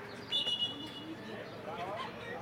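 A referee's whistle blown once, a short, steady high blast. Players' voices call out on the pitch after it.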